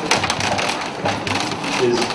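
A crowded room of people sitting back down on wooden chairs: a dense clatter of chair creaks, knocks and shuffling, with a spoken word near the end.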